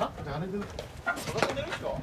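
A low, wordless voice from a player, with a few short, sharp sounds about a second in.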